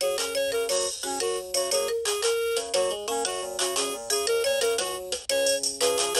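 VTech Rattle and Sing Puppy baby toy playing a simple electronic tune of short, quick notes through its small speaker.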